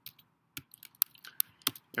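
Computer keyboard keys pressed one at a time, about six separate clicks with short pauses between them, the loudest about a second in.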